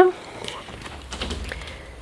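Quiet indoor room tone with a few faint clicks and a low rumble starting about a second in: handling noise and footsteps from someone walking with a handheld camera.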